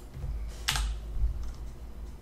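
Computer keyboard keys being pressed: one sharp keystroke about two-thirds of a second in, then a few fainter taps, over a low rumble.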